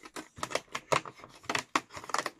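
Cardboard advent calendar door being picked and torn open by hand: a quick, irregular run of sharp crackles and clicks.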